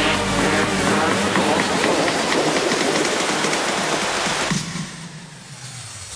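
A steel roller coaster train running along its track, a loud, even rush that drops away sharply about four and a half seconds in. The tail of a music track is heard at the very start.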